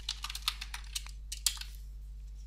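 Computer keyboard typing: a quick, irregular run of key clicks that stops shortly before the end.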